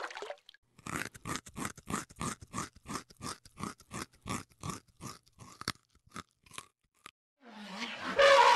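A white rabbit chewing fresh leaves: quick crunching bites, about three to four a second, for some six seconds. Near the end a different, louder animal sound begins.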